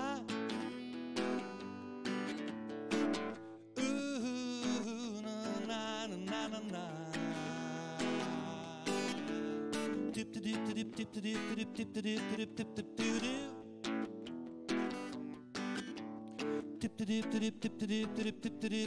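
Acoustic guitar strummed in steady chords, with a man singing along at the microphone.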